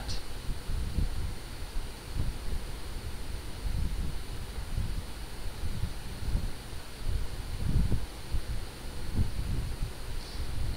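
Uneven low rumble of noise on the microphone, like wind or handling, with no voice over it.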